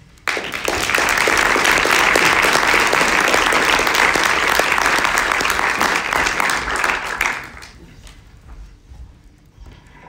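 Audience applauding. It starts suddenly, holds steady, then dies away after about seven seconds.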